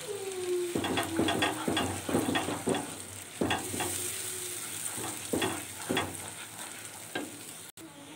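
Beaten eggs sizzling in a frying pan as a spatula stirs them through the masala, with repeated irregular scrapes of the spatula against the pan as the eggs scramble.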